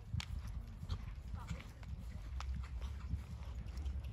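Horses' hooves cantering on a sand arena surface, heard as irregular soft thuds and clicks over a steady low rumble.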